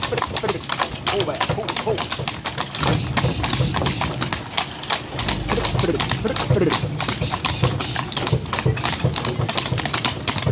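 Hooves of a pair of Bucovina draft horses clip-clopping on a paved road as they pull a cart, with voices in the background.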